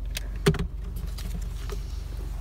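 A vehicle's plastic glove box latch clicks open with one sharp knock about half a second in, followed by a few lighter clicks and rustles as the owner's manual is taken out, over a steady low hum.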